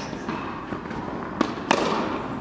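Tennis balls struck and bouncing in a reverberant indoor tennis hall: two sharp echoing impacts close together near the end, over a steady hall background.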